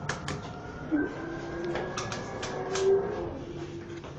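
Elevator car floor buttons on a Mitsubishi elevator panel clicking as they are pressed, several presses in a row with no confirmation beep. A steady low tone runs under the clicks from about a second in, loudest near the end.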